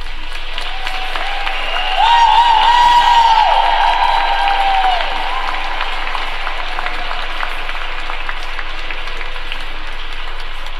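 Applause from a small arena crowd, many separate claps heard in a steady patter. About two seconds in, a louder, long held high tone rises over the clapping and fades out near the five-second mark.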